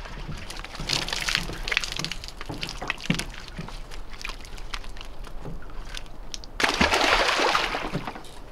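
Water sloshing and splashing as live trout are scooped by dip net out of a stocking truck's tank and dumped into a pond: a string of small splashes and knocks in the first few seconds, then one louder splash lasting about a second near the end.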